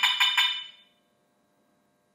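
Ajax wireless alarm siren giving a quick run of short, high beeps that fade out within the first second: the siren's signal that the system is being armed.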